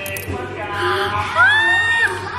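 A person's voice calling out without words, rising sharply in pitch about one and a half seconds in to a long high held note, like a whoop.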